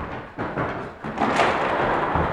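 Thuds and scuffling footsteps of people running and grappling on a wooden floor, with a couple of sharp knocks in the first second and a denser noisy scramble from just past the middle.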